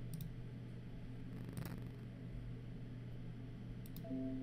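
A few computer mouse clicks over a steady low hum: a quick double click at the start, one click about one and a half seconds in, and another double click near the end.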